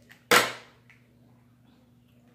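Snow crab leg shell snapped open by hand: one sharp crack about a third of a second in, with a small click just before it and another about a second in.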